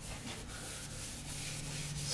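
Cloth towel rubbing over the waxed wood of a small table, buffing the paste wax off, over a steady low hum.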